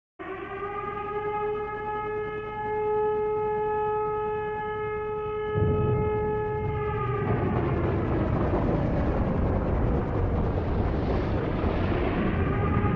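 Recorded air-raid siren opening a heavy metal song: one long steady wail. About five and a half seconds in a heavy low rumble joins, and the siren fades out a little later, leaving a dense, noisy roar.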